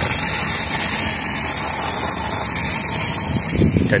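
Steady rush of a strong stream of water pouring and splashing onto wet tiles.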